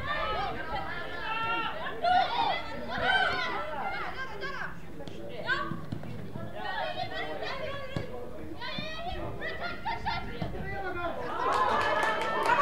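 Several voices calling and shouting over one another during play on an outdoor football pitch, with no clear words.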